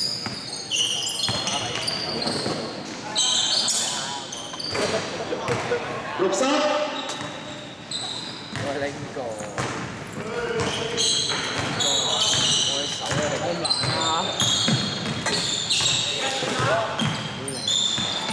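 Basketball dribbled on a hardwood gym floor during a scrimmage, with many short high sneaker squeaks from players cutting and stopping, and players calling out. Everything echoes in a large sports hall.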